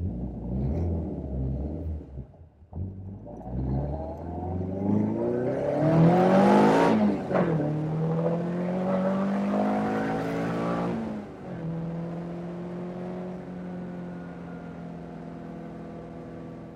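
Caterham 310S's 1.6 Ford Sigma four-cylinder engine, fitted with a lightened flywheel, accelerating hard: the note climbs steadily to a peak and drops sharply at an upshift about seven seconds in, then runs at a steady pitch, easing off a little near eleven seconds. Wind and road rush fill the open cockpit while it pulls hardest.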